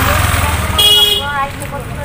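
A passing motor vehicle's engine rumbling low, then a short high-pitched horn toot about a second in, with snatches of voices around it.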